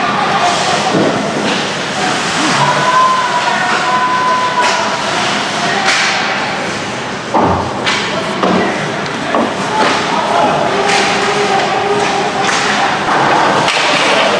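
Ice hockey play in a rink: sticks, skates and the puck knocking on the ice and against the boards, with one heavy thud about seven seconds in, over the voices of players and spectators.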